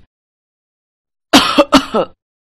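Silence, then about a second and a half in, a woman coughs in a quick short run, choking on food that is too spicy.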